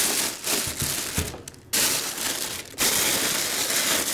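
Thin plastic bag crinkling and rustling as it is wrapped around a full-size football helmet, with a brief lull about a second and a half in.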